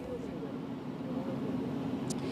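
Street ambience with a steady low hum of idling vehicle engines and faint distant voices.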